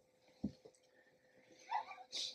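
A pause with quiet room tone and a faint steady hum, broken by one brief soft low thump about half a second in and a short faint sound near the end.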